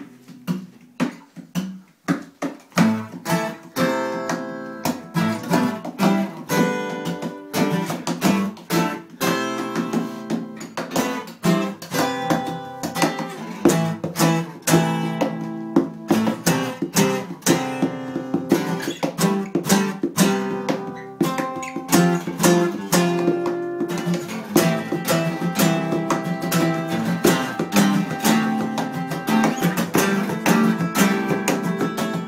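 Acoustic guitars playing an instrumental piece, strummed and picked chords in a steady rhythm.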